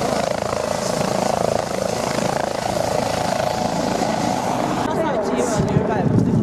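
Police helicopter, a Eurocopter EC135, flying low over the field with loud, steady rotor and turbine noise.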